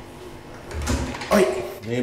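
A bathroom door being unlatched and opened by its lever handle, with a low knock and latch clicks about a second in.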